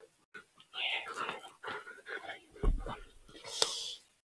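A man speaking softly, close to a whisper, with a low bump a little past halfway and a brief rustling hiss near the end.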